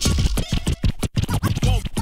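Hip hop beat with turntable scratching: short, choppy record scratches sweeping up and down in pitch over the music, with a brief break about a second in.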